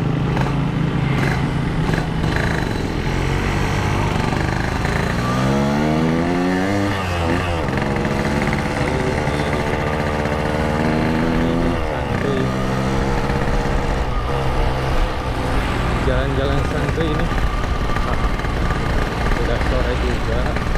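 Yamaha RX-King two-stroke single-cylinder engine, heard from the rider's seat, accelerating through the gears: its pitch climbs, drops sharply at a gear change about seven seconds in, climbs again, drops at a second shift around twelve seconds, then holds steady at cruising speed.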